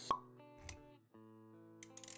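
Intro music for an animated logo, with sound effects: a sharp pop just after it begins, a low thump a little over half a second in, then sustained notes after a brief drop-out near the middle.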